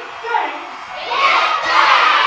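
A roomful of children shouting and cheering together, their many voices overlapping and growing louder about a second in.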